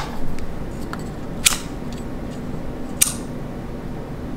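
Pocket lighter flicked to light a jar candle: two sharp clicks about a second and a half apart, over a faint steady low hum.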